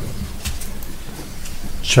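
A pause in speech filled by the meeting room's steady background noise with a low hum. A voice comes back in at the very end.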